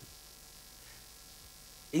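Faint, steady electrical mains hum in the broadcast audio during a pause in speech, with speech starting again right at the end.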